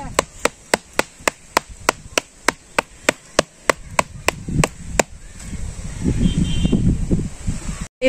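A woven bamboo winnowing tray (kula) beaten in a steady rhythm of sharp wooden knocks, about four a second, as a ritual noise to drive off ghosts. The knocking stops about five seconds in, and a low rumbling noise follows.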